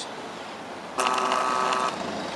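Small DC motor of a mini toroidal winding machine, run off a 12-volt battery, running briefly: a steady whine that starts suddenly about a second in and cuts off just under a second later as it turns the shuttle ring through part of a turn.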